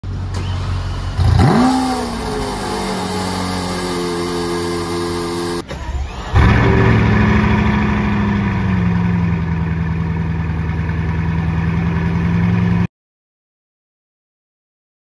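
Lamborghini Veneno's 6.5-litre V12 starting about a second in, flaring up in revs and settling into a steady idle. After a cut near the middle, a Bugatti Divo's quad-turbo W16 starts with a flare and settles into a deep, steady idle. The sound stops abruptly about a second before the end.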